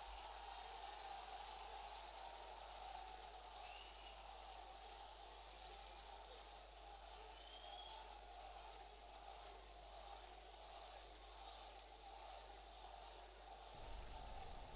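Near silence: a faint steady background noise, with a few faint short high whistles partway through.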